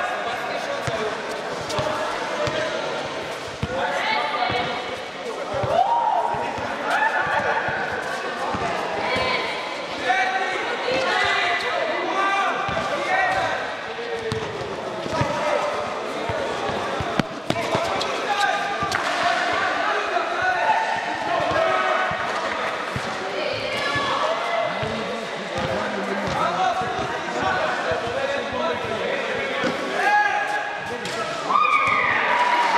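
A basketball bouncing on a hard indoor court floor as players dribble and shoot, with repeated sharp thuds throughout, over players' voices calling out.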